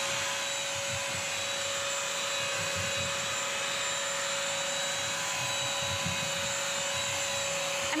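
Bissell CrossWave wet/dry vacuum running over tile floor, picking up pet hair: a steady motor whine over a suction hiss, holding one pitch throughout.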